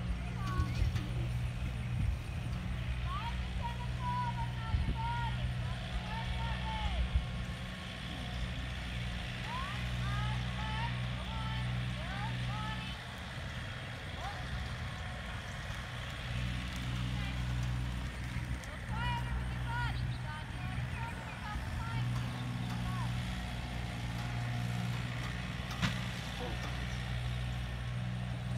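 A steady low engine drone runs throughout, with short high chirps scattered over it.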